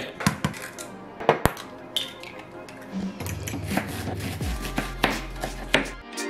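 Kitchen clatter from cooking scrambled eggs: scattered taps and clinks of utensils and pans. Background music with a deep bass note comes in about halfway through.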